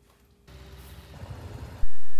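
Near silence for about half a second, then a steady noise that jumps loud near the end into the steady running of a light aircraft's engine heard in the cockpit on the ground.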